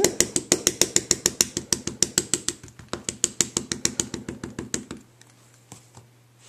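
Rapid, even tapping of an ink pad against a rubber stamp to ink it, about eight taps a second. It fades slightly and stops about five seconds in.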